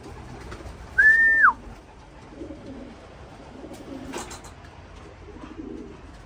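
One loud whistle, held steady for about half a second and then dropping in pitch, calling a returning racing pigeon in to the loft, with soft pigeon cooing around it and a sharp click a little after four seconds in.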